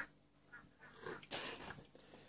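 A short slurp of hot Milo malted drink from a mug, with faint mouth noises before it, the loudest slurp a little past the middle.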